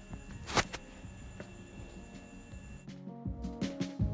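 Paper sewing patterns being handled on a table, with one short, sharp paper rustle about half a second in. Background music starts about three seconds in.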